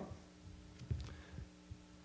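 A pause in speech: a steady, faint electrical hum, typical of mains hum in a microphone and speaker system, with a few soft low thumps, the strongest about a second in.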